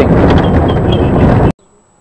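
Wind buffeting the microphone over the rumble of a pickup truck on the move, heard from its open bed. It cuts off abruptly about a second and a half in.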